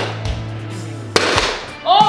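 Background music with one sharp whack a little over a second in: a paper tube striking a foil-covered papier-mâché piñata.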